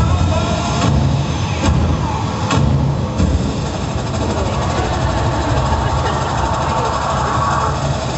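A loud, low engine-like rumble from the dance routine's soundtrack, played over the hall's speakers, with a few sharp hits on top.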